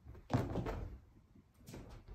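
Two dull thuds, the first louder and longer, the second weaker about a second and a half later.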